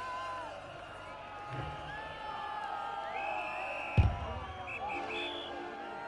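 Arena concert crowd shouting, whooping and whistling between songs, with a single loud thump about four seconds in and a few short, held high tones from the stage.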